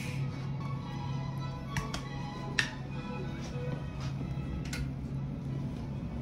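Background music with sustained, steady tones, with a few sharp clicks over it, the loudest about two and a half seconds in.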